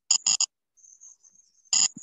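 Short, sharp, high-pitched chirps: three in quick succession near the start and another near the end, with a faint high whine between them.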